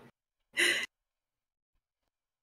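A person's single short, breathy exhale, like a sigh, about half a second in.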